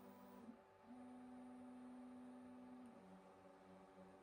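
Faint whine of the Sovol SV08's stepper motors driving the toolhead through its pre-print bed-mesh probing moves: a short tone, a brief pause, a steady tone held for about two seconds, then a lower tone near the end.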